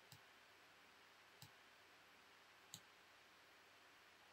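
Near silence, broken by three faint single clicks of a computer mouse a little over a second apart.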